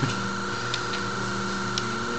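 A few faint clicks from a handheld drone remote controller's buttons and sticks, over a steady high-pitched electrical hum.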